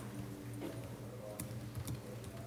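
Laptop keyboard being typed on, a few separate key clicks, most of them in the second half, over a steady low hum.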